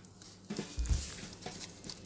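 A few faint, soft thumps and handling noise of cardboard being pressed and fitted against a milk carton.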